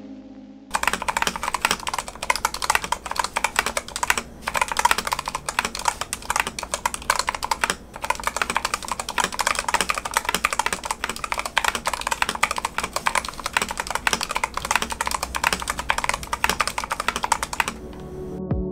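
Dustsilver D66 65% mechanical keyboard with Gateron Brown switches being typed on quickly and without let-up: a dense stream of key clacks, broken by two brief pauses about four and eight seconds in.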